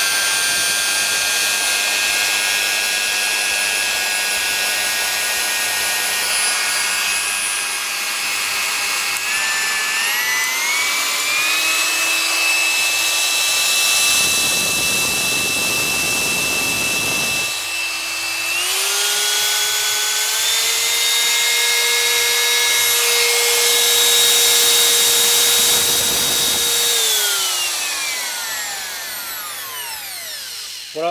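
Bosch POF 1400 ACE wood router running with no load: a high motor whine that steps up in pitch twice as the speed dial is turned up, then winds down near the end as the motor is switched off. Two spells of louder hissing noise come and go along with it.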